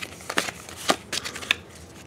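Pokémon trading cards sliding and flicking against each other as they are shuffled through one at a time from a stack just taken out of a booster pack, with a few short, sharp card flicks.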